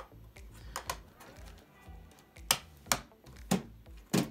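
Small hard plastic clicks and knocks as a 3D-printed coupling slug is pushed onto a stepper motor's shaft and the printed arm is fitted over it, with three sharper clicks in the second half.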